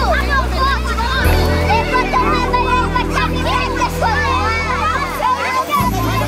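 Many children's voices shouting and chattering at once while they play in shallow water. Background music with a steady bass line runs underneath.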